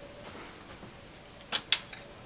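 Two sharp metallic clicks close together near the end, the first the louder: long tweezers touching metal inside an open electronics instrument's chassis while reaching for a loose screw.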